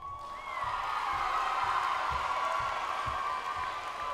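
Audience cheering and applauding, starting suddenly and swelling within the first second into loud, high-pitched cheers that carry on steadily.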